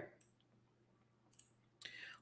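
Near silence broken by a few faint clicks of a computer mouse, one just after the start and a couple more near the end.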